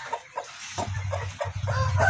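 Domestic hen clucking low and repeatedly as she settles onto a clutch of eggs, the clucks running together into a steadier low churr after about a second.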